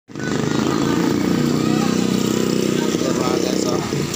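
Motorcycle engine running close by with a steady, fast-pulsing low note that drops back just before the end, with people talking in the background.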